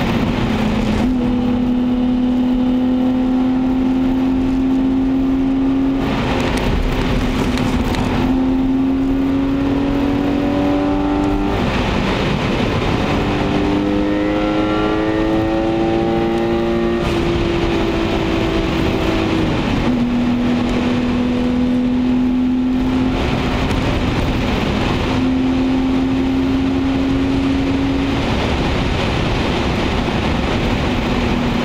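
The BMW 525i E34's 2.5-litre 24-valve straight-six heard from inside the cabin, pulling up through the revs in slow climbs of several seconds. The engine note drops away a few times between climbs, over a steady rush of tyre and road noise.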